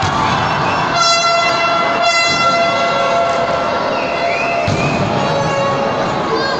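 A horn blown in the crowd holds one steady note for about four seconds, starting about a second in, over constant arena crowd noise. A short thud comes near the end of the note.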